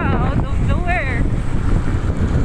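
Wind rushing hard over the microphone of a moving motor scooter, a loud even roar. A brief wavering voice rises over it in the first second.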